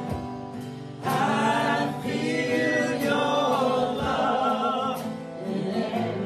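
Live singing to strummed acoustic guitar, with sung phrases and a strum roughly every second.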